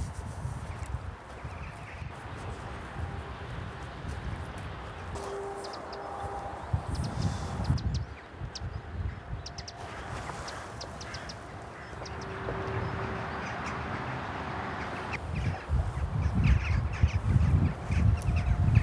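A flock of jackdaws calling, many short sharp calls scattered throughout, over wind rumbling in gusts on the microphone.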